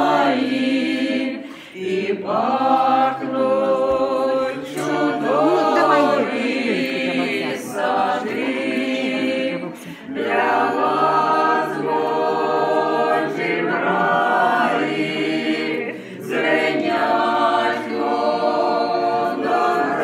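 A small group of men and women singing a church hymn together a cappella, in long phrases broken by short breaths.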